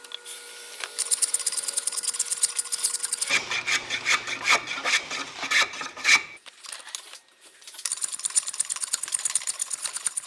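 A hand rasp worked in quick, rhythmic back-and-forth strokes on the end of a wooden hammer handle, rounding it off. The strokes get louder in the middle, stop for about a second and a half after about six seconds, then start again near the end.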